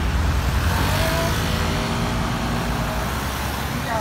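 Road traffic: cars passing with a steady low rumble of engines and tyres.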